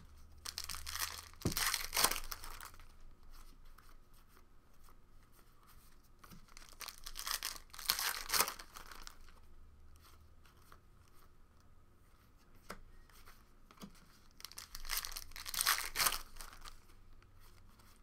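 Wrapper of a football trading card pack being torn open and crinkled, in three bouts of a second or two each. Between the bouts there is fainter rustling and ticking of cards being handled.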